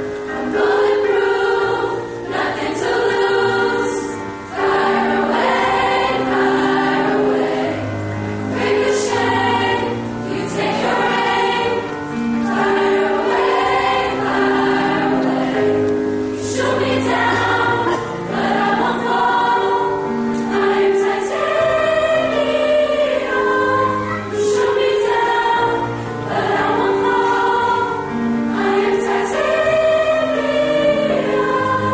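A high school choir singing a piece in parts, the sustained notes changing every second or so with no break.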